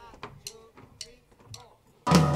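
Faint voices with a few light clicks and ticks, in a quiet stretch before the music.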